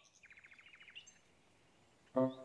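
A faint, brief bird trill, a rapid run of short high chirps lasting under a second, then near silence.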